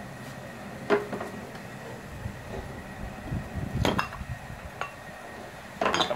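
Freshly cast lead ingots being dumped out of a metal ingot mold onto stone pavers: a few metallic knocks and clinks, the two sharpest about a second in and just before four seconds.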